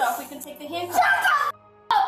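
A child's voice crying out in short, strained yelps and whines while held down in handcuffs, cutting off suddenly about one and a half seconds in.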